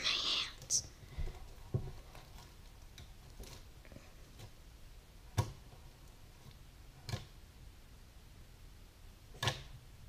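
Elmer's purple fluffy slime being stretched and pressed flat onto a wooden table: about five sharp, sticky clicks spaced a second or more apart.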